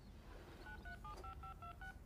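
Faint touch-tone telephone keypad dialing: about seven quick two-tone beeps in a row, a phone number being keyed in.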